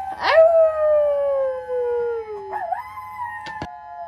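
A long howl that rises sharply, then slides slowly down in pitch for about two seconds, followed by a short wavering call and two sharp clicks near the end.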